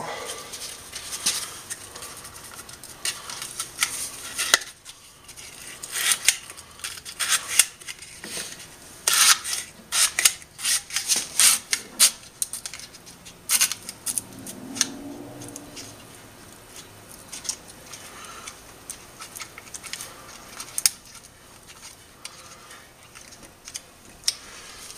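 Stiff insulating slot papers being handled and pushed into the steel slots of an electric motor stator, with irregular crisp scrapes, rustles and clicks as the paper drags through the slots.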